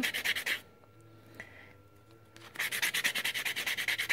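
Worn metal reliefing block rubbed in quick back-and-forth strokes across an embossed natural brass ring blank, lightly sanding the raised pattern so it stands out. The strokes stop about half a second in and start again about two and a half seconds in.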